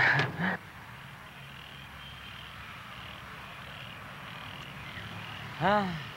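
Frogs calling in a steady, faint chorus of short repeated notes. A voice ends about half a second in, and a short vocal sound comes near the end.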